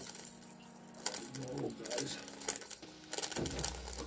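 Many small resin diamond-painting drills pouring out of a plastic bag into a plastic tray, a fast run of light clicks and rattles.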